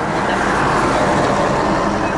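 City traffic passing close by, heard from inside a stopped car: a bus drives past, and the noise swells to its loudest about a second in.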